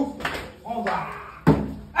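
A small plastic water bottle, flipped, lands upright on a plastic table with a single sharp thump about one and a half seconds in, amid excited voices.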